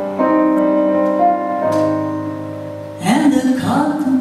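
Live jazz quartet playing a slow ballad: piano chords ringing out and fading over a low double bass line, then a woman's voice coming in singing about three seconds in.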